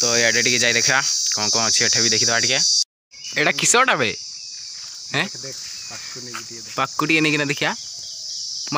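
A steady, high-pitched drone of insects in the trees, under a man's voice talking in bursts. Just before three seconds in, all the sound cuts out for a moment.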